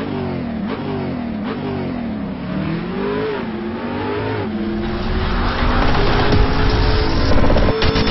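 A car engine accelerating hard through the gears: its pitch climbs and drops back at each shift, then it holds a louder, steadier note with a growing rush of noise.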